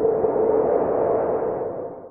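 A title-card sound effect: a single ringing, droning swell with a steady tone at its centre, fading out near the end.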